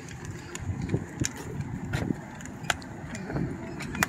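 Footsteps and scattered sharp clicks on wooden boardwalk planks, about one click a second, over an uneven low rumble.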